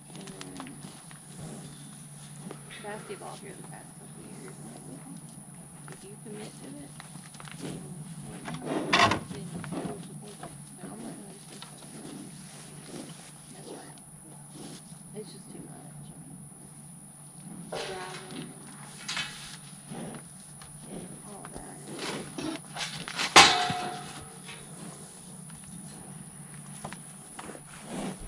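Cattle shuffling in a pen and squeeze chute, with faint scattered knocks and rattles of the panels. Two louder sudden sounds come about nine seconds in and a few seconds before the end.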